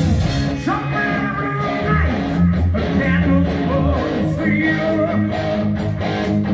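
Live rock band playing: electric guitars over bass and drums, with a cymbal struck in a steady beat about two to three times a second.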